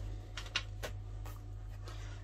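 Brief, soft rustles of paper sheets from a scrapbook paper pad being handled and turned, over a steady low electrical hum.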